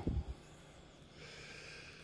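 A man drawing a breath near the microphone in a pause between words: a soft, faint intake of air through the nose in the second half. A couple of brief low thumps come just at the start.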